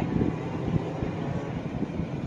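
Wind buffeting the microphone: an irregular low rumble that rises and falls in small gusts.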